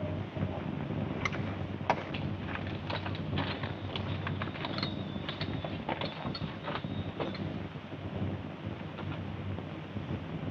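Steady hiss of an old optical film soundtrack, with scattered light clicks and knocks between about one and seven seconds in.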